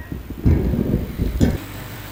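Microphone handling noise over a PA: a low rumble for about a second, ending in a sharp knock, then a steady low hum.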